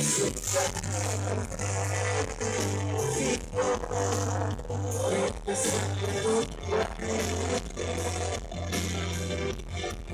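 A live band playing: guitars over long held bass notes, a steady, full mix with no break.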